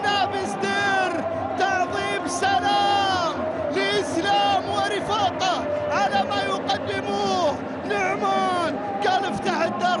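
A TV football commentator's excited voice in long, drawn-out, half-sung exclamations celebrating a goal, over the steady noise of a stadium crowd.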